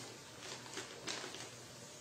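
Faint crinkling of a plastic packet of shredded mozzarella being handled, a few light rustles in the first half.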